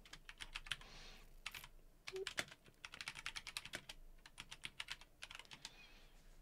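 Faint, rapid typing on a computer keyboard: quick runs of keystrokes with short pauses between them as a search query is typed.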